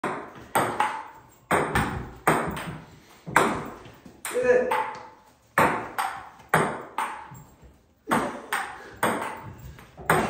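Ping pong ball clicking back and forth in a rally, bouncing on the table top and struck by a paddle, in quick groups of about two to three clicks a second with short pauses between them. Each click trails off briefly.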